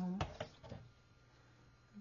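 A few short light clicks and taps from handling a clear plastic sliding paper trimmer and a paper strip on the desk, within the first second, then quiet room tone.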